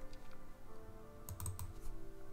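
A few computer keyboard keystrokes, a small cluster of clicks past the middle, over soft background music with steady held notes.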